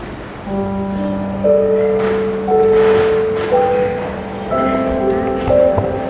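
Church music of sustained chords begins about half a second in, with long steady held notes changing every second or so.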